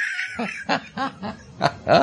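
A man chuckling in a string of short bursts, laughing at a pun.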